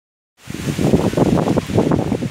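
Strong storm wind buffeting the microphone: loud, irregular gusts that start about half a second in.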